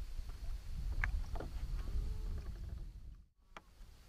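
Low, uneven rumble of wind and water noise on an open boat deck, with a few faint clicks and a short chirp; the sound drops out briefly near the end.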